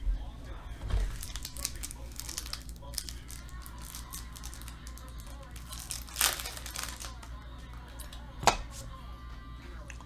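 Plastic crinkling and rustling from handling trading cards and their plastic sleeves and holders, broken by a few sharp clicks and taps, with faint music underneath.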